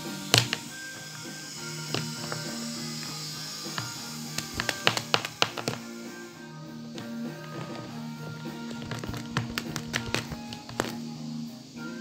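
Plastic toy dinosaurs tapping and knocking against a wooden ledge and each other as they are pushed into a mock fight, in a quick flurry about five seconds in and again around ten seconds. Background music plays under it throughout.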